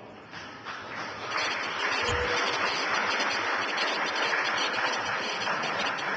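Crowd applause in a large hall, building up about a second in and then holding steady, with a brief thump near two seconds.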